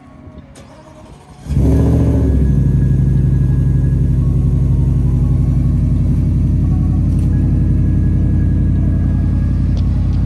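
Cold start of a Shelby Super Snake F-150's supercharged 5.0-litre Coyote V8 through its Borla Quiet Tone exhaust. It fires about a second and a half in, flares up briefly, then settles into a steady idle.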